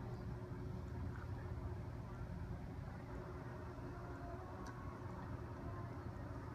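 Steady low rumble of a bicycle ride along a wet paved trail: wind and tyre noise.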